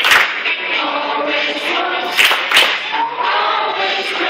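A group of children and adults singing a song together, with a few sharp handclaps: one at the start and two a little past two seconds in.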